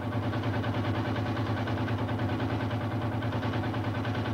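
A machine running steadily, a low hum with an even, rapid pulse like an engine at idle.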